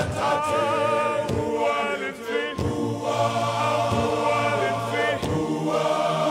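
Men's choir singing a gospel song, with a solo male voice leading.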